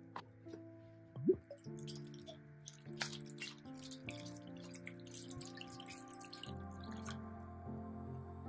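Vinegar poured from a glass bottle onto a plastic tub of old brass handles and hinges, splashing and trickling over the metal, under background music with steady held notes. A short rising squeak comes about a second in.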